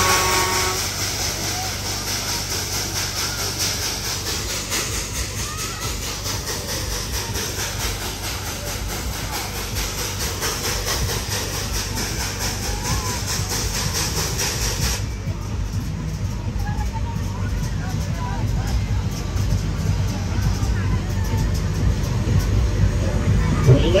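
Fairground spinning ride running, with a steady rumble from its machinery. A high hiss runs over it and stops suddenly about fifteen seconds in. Riders' voices are faint in the mix.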